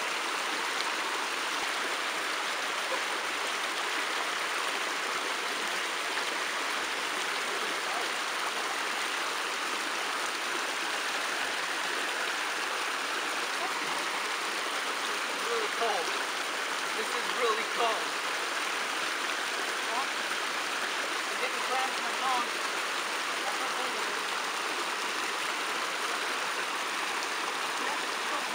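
Shallow creek water rushing steadily over rocks and a tangle of branches, an even, constant hiss.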